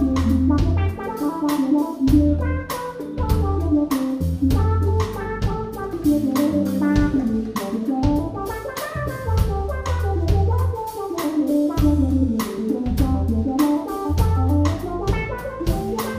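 Live jazz band playing: drum kit, electric keyboards and a deep, recurring bass pattern under rippling melodic runs that rise and fall.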